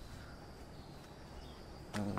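Quiet outdoor background with a faint, steady high-pitched insect drone, and a short knock right at the very end.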